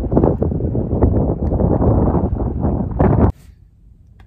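Wind buffeting the microphone: a loud, gusty low rumble that cuts off abruptly a little over three seconds in, leaving a quiet hush.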